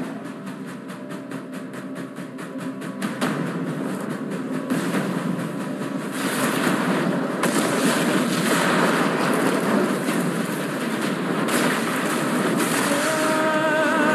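Animated-film battle sound effects: a fast, even clatter for the first few seconds, then a growing rush of fire and explosion noise. Music with held notes comes in near the end.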